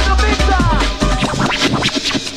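Old skool hardcore dance music from a live DJ set, with heavy bass, a fast beat and quick falling pitch sweeps about half a second in.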